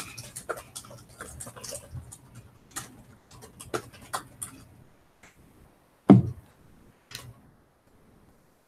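Laptop keyboard typing: quick, irregular key clicks, dense for the first few seconds and then thinning out, with one louder thump about six seconds in.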